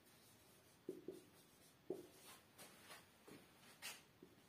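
Marker pen writing on a whiteboard: several faint, short strokes and squeaks, spaced irregularly.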